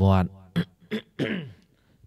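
A man's speech breaks off, then he clears his throat in three short sounds, the last one trailing away.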